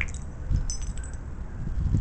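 Broken metal piston fragments clinking and scraping together as they are picked through by hand, with a short cluster of light ticks a little under a second in.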